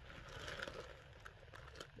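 Faint rustling and crinkling of a plastic shipping bag being handled, strongest about half a second in, followed by a few small crackles.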